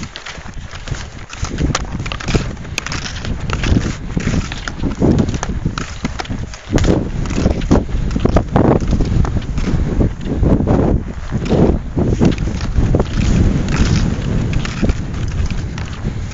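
Wind buffeting the microphone in gusts, with rhythmic strokes about once a second from a ski tourer's climbing strides.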